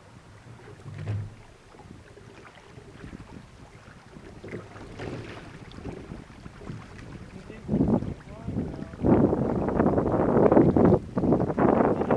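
Wind buffeting the microphone over water washing along the hull of a sailing kayak under way. The wind noise jumps much louder about eight seconds in and stays loud in gusts.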